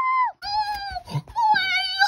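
A high human voice wailing a drawn-out "oh… no!", the last cry held long and steady.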